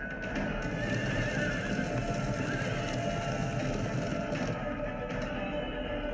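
Film score playing over a dense low rumble, with a horse whinnying about a second in.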